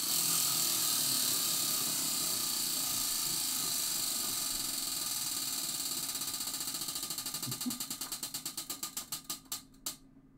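Prize wheel spun by hand, its pointer ticking against the pegs in a fast rattle that slows into separate, widening clicks and stops just before the end.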